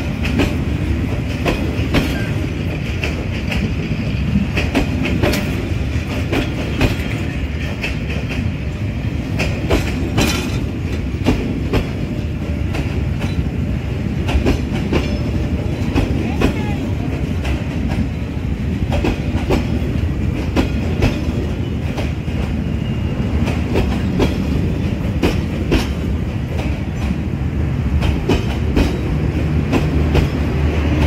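Passenger train coaches rolling past at close range: a steady rumble with repeated clacks of the wheels over the rail joints.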